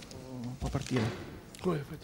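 Indistinct voices of people talking away from the microphone in a hall, with words too unclear to make out.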